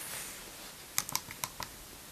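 Nokia 3310 keypad buttons clicking under a fingertip as a text message is typed by multi-tap. About a second in there is a quick run of about six faint clicks.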